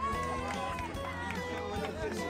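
Footsteps of a large pack of runners going past in a street race, many irregular footfalls together, with voices calling over them.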